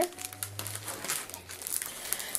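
Clear plastic packaging crinkling as it is handled, a string of small irregular crackles.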